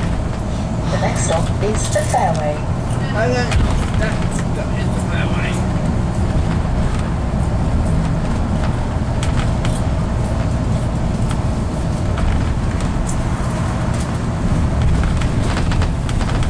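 Bus cabin noise while driving: a steady engine hum and road rumble with a steady mid-pitched drone. Brief voice-like sounds come in during the first few seconds.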